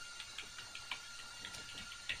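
Faint computer keyboard typing: a quick, uneven run of soft key clicks as a line of text is typed.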